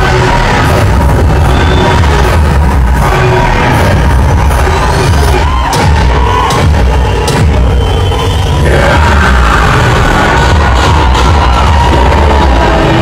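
A film teaser's soundtrack played loud through cinema speakers, heavy in the bass, with a theatre audience cheering over it.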